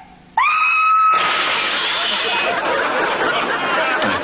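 A high voice slides up into a short held note, then a sudden burst of several people screaming, chattering and laughing together.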